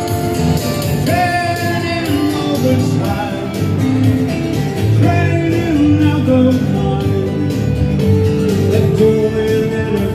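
Live band music: electric bass, electric guitar and acoustic guitar playing together through amplifiers.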